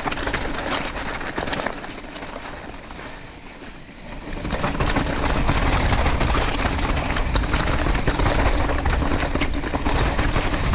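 Mountain bike rolling downhill over loose rocks and gravel, the tyres crunching and the bike rattling. It eases off about two seconds in, then comes back louder and rougher from about four and a half seconds on.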